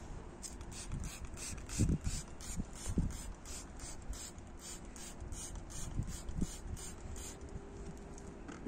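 Trigger spray bottle of cleaner pumped in quick repeated strokes onto a microfibre cloth: short hissing puffs about three a second that stop about a second before the end, with a few soft handling knocks.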